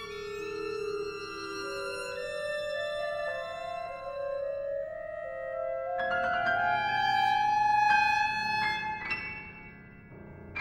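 Contemporary classical chamber ensemble music. Sustained notes climb slowly in pitch, then about six seconds in a fuller, louder texture with sharp struck notes takes over, fading near the end.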